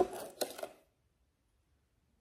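A metal teaspoon clicking and scraping inside a plastic container as it scoops granular monk fruit sweetener: a sharp click, then a few softer scrapes over the first second.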